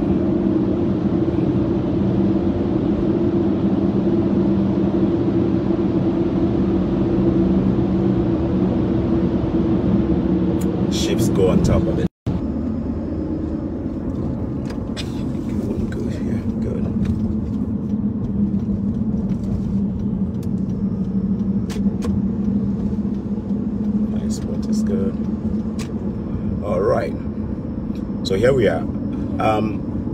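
Car cabin noise while driving: a steady low engine and road drone, heard inside the car. It breaks off abruptly about twelve seconds in and resumes a little lower.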